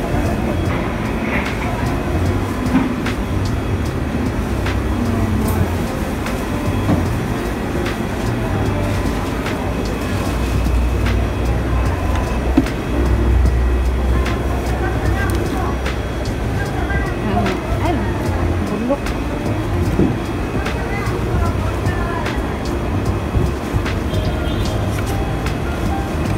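Busy ambient noise: a steady low rumble with indistinct voices and scattered light clicks and knocks. The rumble is heavier for a few seconds in the middle.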